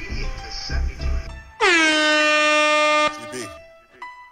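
A single loud air horn blast about a second and a half in, its pitch dipping at the start and then held steady for about a second and a half before it cuts off suddenly. Before it, rap music with a bass beat and voices plays.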